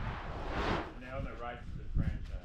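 Faint, indistinct human voices over a steady low rumble of wind on the microphone, with a short rush of noise about half a second in.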